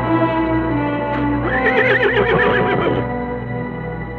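Orchestral film score with sustained notes, and a horse whinnying once in a long, wavering call from about a second and a half to three seconds in.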